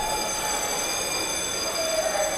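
A steady, high-pitched buzzing tone with a rich stack of overtones, starting suddenly and holding level for about two seconds over a background of echoing hall noise.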